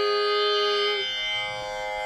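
A woman's singing voice holding one steady note, a closed-mouth hum on the final 'm' of the Sanskrit verse line, which stops about a second in. A steady instrumental drone of sustained tones carries on beneath it and after it.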